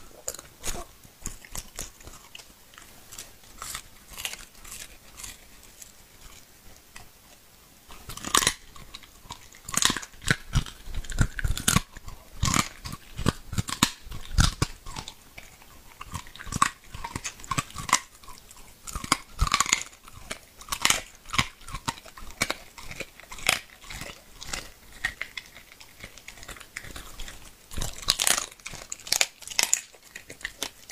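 A dog biting and chewing raw meat and bone, likely a duck neck, with wet crunches. The crunching is faint for the first eight seconds or so, then louder and more frequent.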